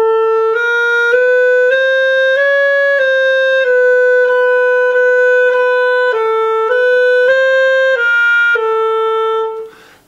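Schwenk & Seggelke Model 2000 German-system clarinet played legato: a phrase of about a dozen notes that steps up and back down in a narrow range, with one long held note in the middle and a held low note at the end. It demonstrates keywork that is well adjusted, with the notes speaking cleanly.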